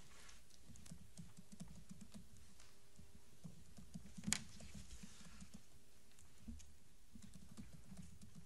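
Quiet meeting-room tone with a faint steady hum, under scattered small clicks and taps and one sharper knock a little past four seconds in.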